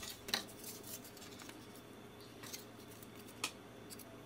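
Thin laser-cut cardboard layers being handled and set onto a stacked cardboard terrain model: faint rustles and scrapes with a few light taps, the sharpest shortly after the start and another near the end.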